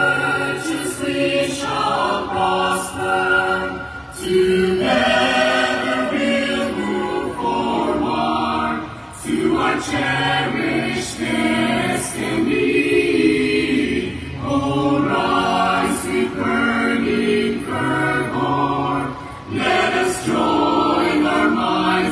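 A choir singing in long phrases, with a brief pause between phrases about every five seconds, heard through a stage sound system.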